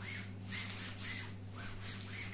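Soft rustling and rubbing: several brief scrapes in a row, over a steady low hum.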